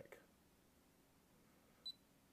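A single short, high-pitched electronic beep near the end from the keypad of a Protimeter HygroMaster 2 hygrometer, a button press being confirmed; otherwise near silence.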